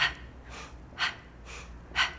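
A woman's short, sharp breaths, three of them about a second apart, keeping time with the reps of a set of tricep dips.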